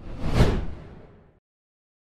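Video-editing whoosh transition effect for on-screen text appearing. It swells quickly to a peak about half a second in, with a deep low end, then fades out before the middle of the clip.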